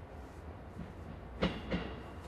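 Two-car JR West 223 series electric multiple unit approaching, a low steady rumble with two sharp wheel clacks over the track joints about a second and a half in, a third of a second apart.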